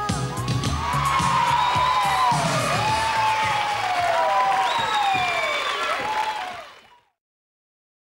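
Studio audience applauding and cheering, with high overlapping shouts, just after the last beat of an italo-disco song. The applause fades out about seven seconds in.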